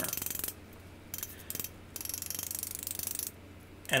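Small body chasing hammer tapping rapidly on a thin stainless steel cone held over an anvil horn, in quick runs of light strikes with short pauses, shrinking the metal to close up the cone's seam ends.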